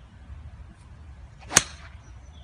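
A golf iron striking the ball on a short shot played off the grass: one sharp click about one and a half seconds in, with a short hiss trailing after it.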